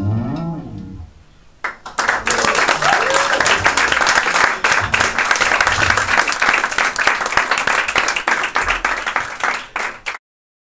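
A live band's final chord on electric guitar and bass rings and fades out within the first second. Then, from about two seconds in, a small audience claps steadily until the sound cuts off at the end.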